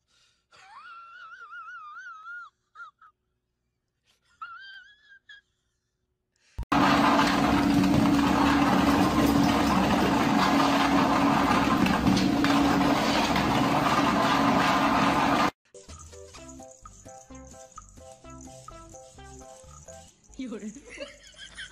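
A few quiet, high, wavering cries, then a treadmill running loudly with a steady motor hum for about nine seconds, cut off suddenly. Near the end, a simple electronic toy tune in stepped notes.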